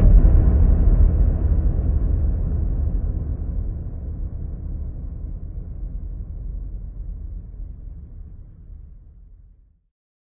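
Outro logo sting: a sudden deep boom that rumbles on and slowly fades away over about nine seconds.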